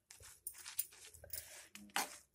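Faint, scattered scrapes and light clicks of a metal spoon stirring soaked dried red chillies in a non-stick pan of heating water.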